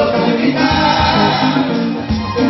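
Live Congolese rumba band music: several voices singing together over a steady beat of drums and bass.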